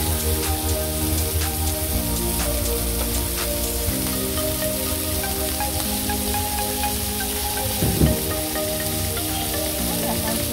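Hamburg steak sizzling on a hot iron serving plate, a steady crackling hiss with many small pops, under background music with sustained chords. One louder burst comes about eight seconds in.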